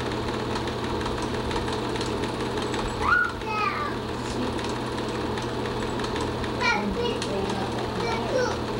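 A steady low hum and hiss, with two short rising high-pitched voice calls, one about three seconds in and one near seven seconds.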